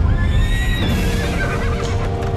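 A horse whinnying: one call of about a second and a half that rises and then wavers down, set over theme music with a heavy low rumble.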